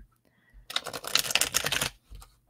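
A tarot deck being riffle-shuffled by hand: a rapid run of flicking card clicks lasting about a second, starting a little after half a second in.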